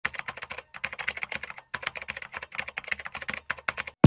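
Keyboard typing sound effect: rapid, irregular key clicks accompanying on-screen text typed out letter by letter, with short pauses about one and two seconds in.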